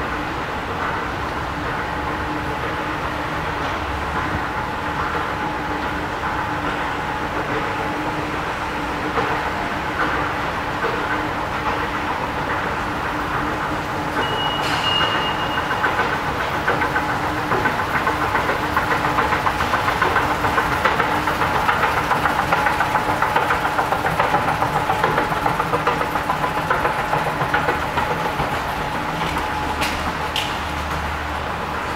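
Escalator machinery running with a steady hum and a fast rattling clatter that grows louder in the second half. A short high beep sounds about halfway through.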